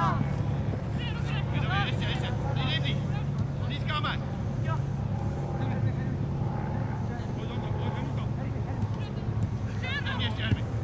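Players calling and shouting across a football pitch in short, scattered calls, over a steady low engine-like hum.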